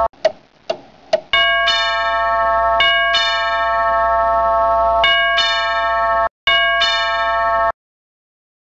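Three light ticks in the first second or so, then an electronic chime tune in clear bell-like notes that change pitch every second or so. It pauses briefly near the end, then cuts off abruptly.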